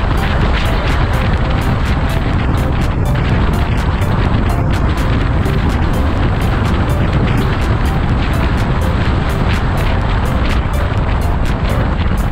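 Steady rush of wind and tyre noise from a car travelling at highway speed, with a beat of background music over it.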